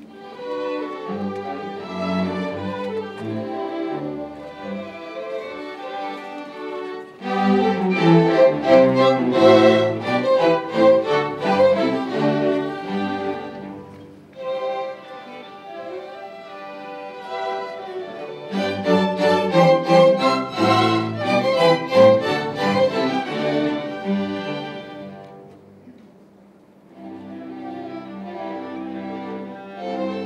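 A string chamber orchestra of violins and cellos playing a classical piece live. The music swells to fuller, louder passages twice, then thins almost to nothing for a moment a few seconds before the end and picks up again softly.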